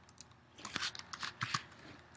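Computer keyboard keys pressed in a quick run of light clicks, starting about half a second in, as the cursor is stepped back along a command line and a character is changed.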